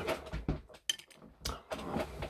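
A few light clicks and taps from a small object being handled in the hands.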